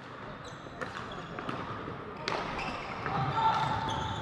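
Sounds of indoor hockey play echoing around a sports hall: sticks knocking the ball and shoes squeaking on the wooden floor, with a brief squeak near the end and voices in the background.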